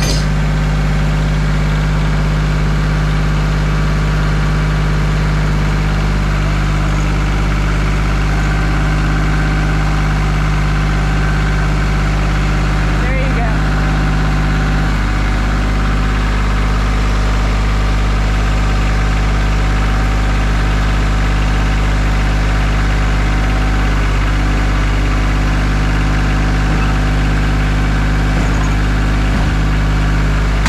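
Compact tractor engine running at a steady, unchanging speed while its front loader works.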